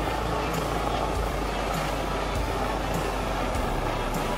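Helicopter flying low overhead: a steady, even rush of rotor and engine noise over a low rumble.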